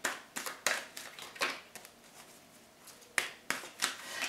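Tarot cards being handled on a wooden table: a series of sharp clicks and taps as cards are picked up and tapped, several in the first second and a half and a few more near the end.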